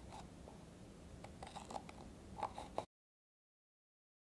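Scissors cutting slowly around the rim of a thin plastic cup: faint, irregular snips and crackles of the plastic. The sound cuts off suddenly about three seconds in.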